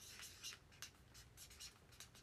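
Faint, quick scratching strokes close to the microphone, several a second and unevenly spaced.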